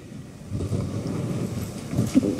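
Low rumbling noise on the microphone, starting about half a second in.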